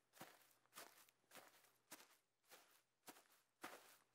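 Faint footsteps, evenly paced at a little under two steps a second, otherwise near silence.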